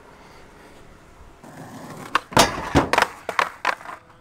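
Skateboard on concrete: a rising rolling noise, then a rapid run of sharp clacks and slaps of the board striking the ground, the loudest about two and a half seconds in.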